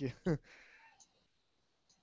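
A brief two-syllable voice fragment at the very start, then a faint click about a second in, with near silence for the rest.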